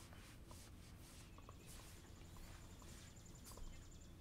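Faint taps and short scratchy strokes of a stylus writing on an iPad screen, scattered irregularly.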